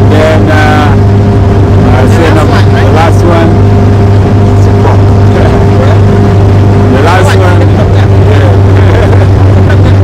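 Motorboat engine running steadily at speed, a loud constant drone, with voices briefly over it a few times.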